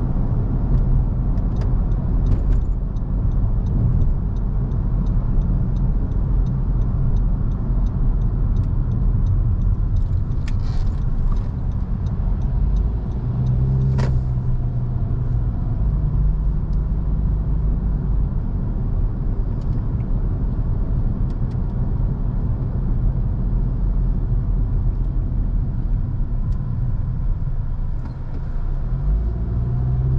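A car driving on a city road: steady engine and tyre rumble throughout, with a run of faint, evenly spaced ticks for several seconds near the start and a single sharp click about halfway through. The engine note rises near the end as the car accelerates.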